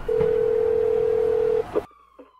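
Telephone ringback tone of an outgoing call: one steady beep lasting about a second and a half, then a short click, and the line goes quiet.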